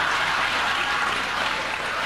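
Studio audience applauding steadily.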